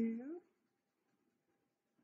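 A woman's voice ends the counted word "two", then faint scribbling of a felt-tip marker colouring on paper.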